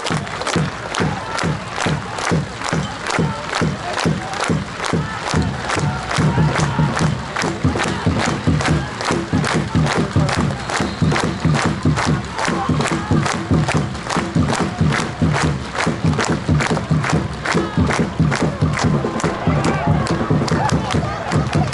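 A stadium crowd of football supporters clapping in unison, about two claps a second, over a steady crowd din.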